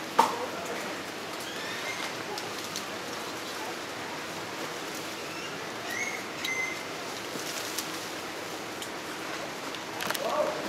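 Outdoor ambience of a steady hiss with a few short, scattered bird chirps. A sharp click just after the start is the loudest sound, with a few fainter clicks later.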